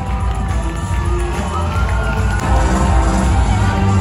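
Music with a heavy bass playing loud over stadium loudspeakers, a large crowd cheering and shouting along with it; it grows louder about two and a half seconds in.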